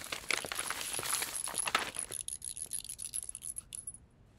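A sheet of paper rustling and crinkling as it is handled, dense for about the first two seconds and then only now and then, with a faint thin high-pitched whine behind it.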